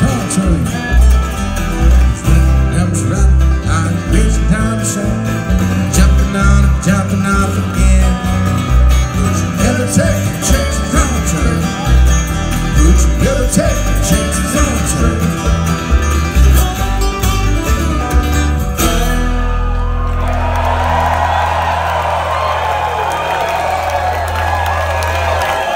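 A bluegrass band playing live through a PA, acoustic guitar and upright bass among the strings, with a steady driving beat. About nineteen seconds in the song ends on a held low chord and the crowd starts cheering.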